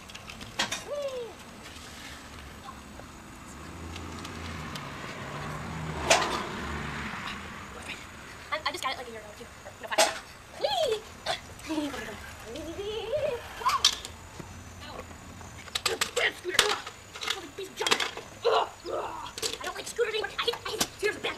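Kick scooter wheels rolling on a concrete driveway, swelling from about 3 to 7 seconds in, with a cluster of sharp clicks and knocks near the end. Faint voices can be heard in the distance.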